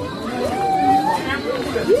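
People's voices at close range, with a drawn-out, wavering vocal sound in the middle and a rising-then-falling 'hmm' near the end, over street background noise.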